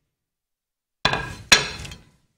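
A plate set down on a kitchen countertop: a clatter about a second in, then one sharp knock.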